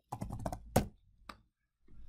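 Typing on a computer keyboard: a quick run of keystrokes, then a louder key press just under a second in and one more shortly after, the command that opens the nano text editor.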